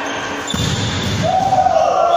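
Indoor volleyball rally in an echoing sports hall: knocks of the ball and players' feet on the wooden floor, then a long shout from about a second in as the rally ends.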